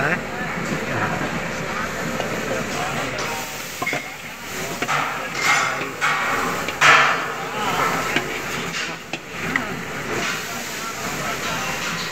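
Batasa machine's rotating pan running with sugar granules tumbling inside, making a steady rushing hiss. A few sharp knocks from the machine come about halfway through.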